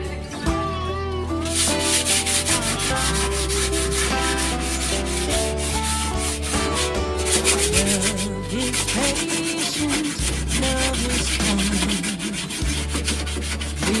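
Hand sanding of a wooden frame: sandpaper rubbed back and forth in quick, repeated scratchy strokes.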